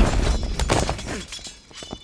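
Fight sound effects from a sword-and-kung-fu scene: a heavy hit dies away at the start, then a few quick strikes and swishes, growing quieter after about a second.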